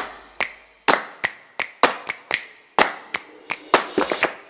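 Intro sound of sharp percussive hits like hand claps or snaps, about three a second in a slightly uneven rhythm, each dying away with a short echo.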